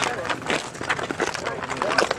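Indistinct voices chattering, with scattered small clicks and knocks.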